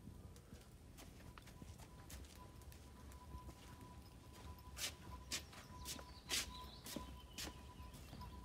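Footsteps of two people walking on a gravel path: faint crunching steps that grow more distinct in the second half, about two a second. A thin, steady high tone runs under them.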